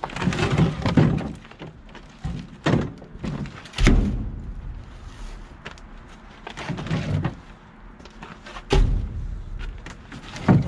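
Firewood logs being lifted from a plastic cart and loaded into the firebox of an outdoor wood boiler: a series of heavy, dull wooden thunks, about six of them, a second or more apart.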